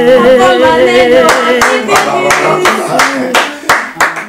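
A woman holds a long sung note with vibrato that ends about a second in, then hands clap in an even rhythm, about three claps a second.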